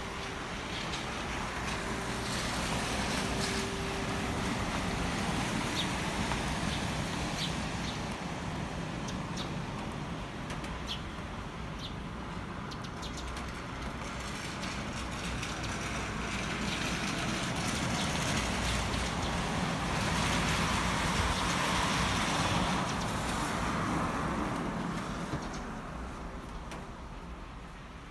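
Street traffic on a wet road: a steady tyre hiss and engine noise from passing cars, swelling louder with one passing vehicle about twenty seconds in. A few short, high bird chirps sound over it in the first half.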